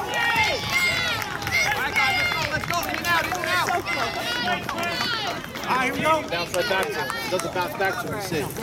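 Many voices shouting and cheering at once, overlapping high-pitched yells with no clear words.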